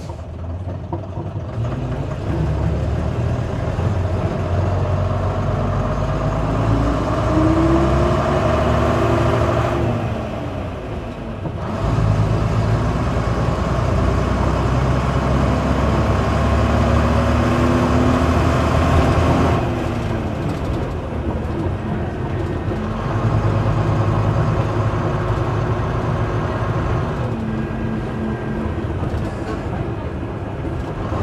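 Leyland Atlantean double-decker bus with its Leyland O.680 diesel engine running under load, the engine note climbing in pitch twice. Each climb is followed by a brief dip, about ten and twenty seconds in, typical of the semi-automatic gearbox changing up.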